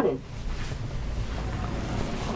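Flat-screen TV's built-in speakers playing a show's soundtrack at low volume: a steady low rumble with no clear voices or tune.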